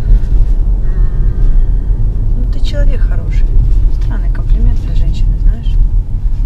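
Inside a moving Toyota car's cabin: a steady low engine and road rumble while driving, with voices over it in the second half.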